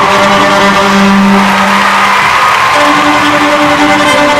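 Electric violin playing, with long held low notes under the melody: one held for about two seconds, then a higher one taking over near the end.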